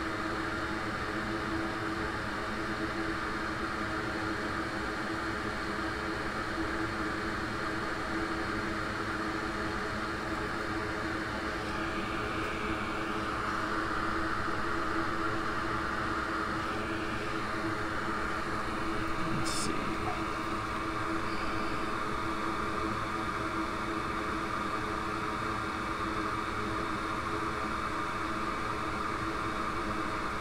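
Hot air rework station blowing steadily, heating a small component so it can be desoldered from a logic board. A single sharp click comes about two-thirds of the way through.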